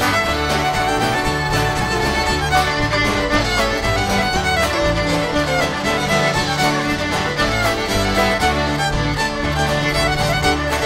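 Instrumental break played live by a band: a fiddle takes the lead melody over strummed acoustic guitar and electric bass, with a steady beat.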